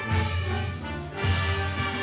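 Brass band playing a slow processional march, sustained chords over low bass notes, with two loud accented beats about a second apart.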